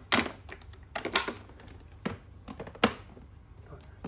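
Plastic-and-metal clicks and knocks from a Toshiba RC-10VPF rice cooker's lid: the detachable inner lid is fitted back and the lid is shut. There are four sharp clicks, about a second apart, and the one just before three seconds in is the loudest.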